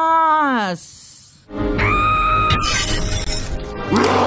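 A drawn-out laughing voice falling in pitch, then about a second and a half in an animated fight soundtrack starts: music over a deep rumble with a held tone, and a sudden crash near the end.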